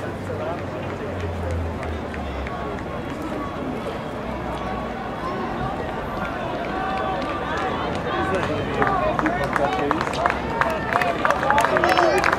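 Spectators talking and calling out around the track, with many voices overlapping. About two-thirds of the way through, the quick footfalls of a pack of runners on the track start and grow louder as the field comes near.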